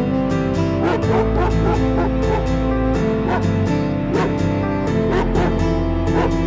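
Background music with a steady beat and held chords.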